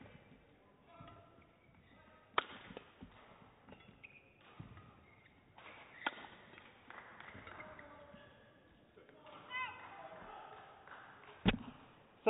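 Badminton rally: sharp strikes of rackets on the shuttlecock a few seconds apart, the clearest about two and a half and six seconds in, with shoe squeaks on the court mat, and a louder knock just before the end.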